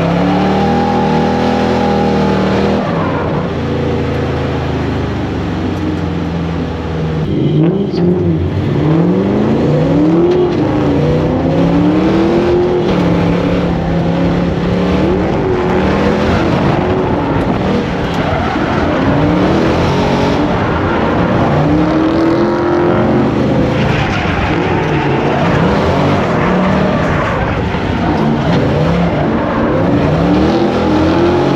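Drift car's engine heard from inside the stripped cabin, held at steady revs for the first few seconds, then revving up and down over and over, every second or two, through the drift, with constant tyre and road noise underneath.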